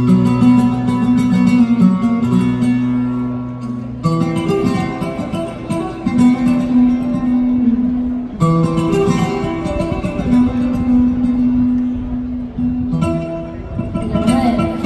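Solo flamenco guitar playing a passage por peteneras: a strong strummed chord about every four seconds, left ringing, with picked notes in between.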